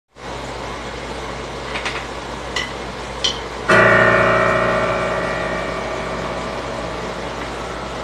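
A steady low hum with a few faint clicks, then a held chord on a digital keyboard that starts sharply about halfway through and slowly fades.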